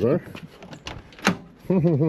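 Land Rover Discovery's driver's door being opened: two short latch clicks about a second in, the second one sharper.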